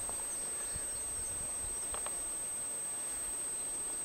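Quiet, steady background hiss with a constant thin high whine, and a few faint taps of footsteps on grass.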